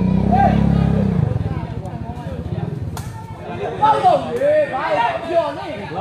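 Men's voices talking and calling out over spectators' chatter, louder in the second half. A low rumble fades out in the first second or so, and a single sharp knock comes about halfway.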